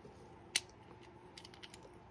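A single sharp click from a small black clamp mount being handled, followed by a few faint ticks as its parts are worked in the fingers.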